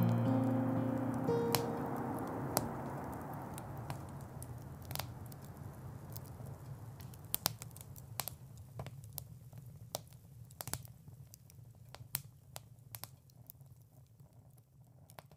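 The last held note of acoustic guitar and humming dies away about a second in, leaving a campfire crackling with scattered sharp pops as the whole sound fades out.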